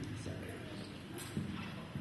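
A woman's short "so", then a pause filled with room tone and a few light knocks and clicks, two close together a little past the middle.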